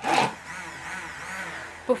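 Immersion blender whirring in a beaker of hot, watery lotion, starting the blend that emulsifies the oil and water phases. A louder burst at the start, then about a second and a half of steady running with a slightly wavering pitch.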